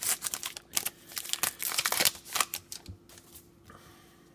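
Crinkling of a torn trading-card pack wrapper being pulled off and handled: a quick run of crackles over the first two seconds or so that thins out and is followed by fainter handling.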